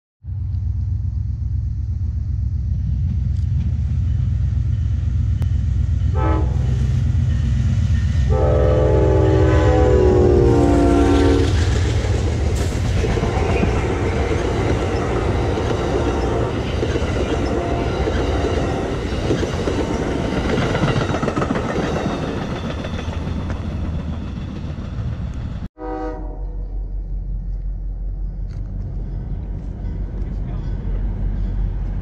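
Amtrak passenger train passing close by with a heavy, steady rumble and rail noise. It sounds a short horn toot about six seconds in, then a long horn blast of about three seconds, the loudest sound. After a sudden break near the end, another short horn blast sounds over a quieter rumble.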